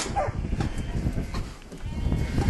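Knocks and rattles from a galvanised sheep-handling crate as a sheep is held in its clamp, with a short high falling call about a quarter second in.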